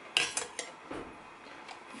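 Metal spoon clinking against a small stainless steel bowl while scooping yogurt into it: a few light clicks in the first second, then quieter.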